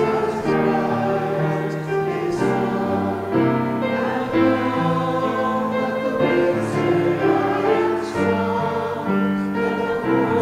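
Church congregation singing a hymn together, the voices holding long notes that move to a new chord every second or so.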